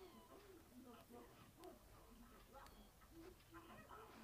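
Near silence, with faint, indistinct vocal sounds in the background.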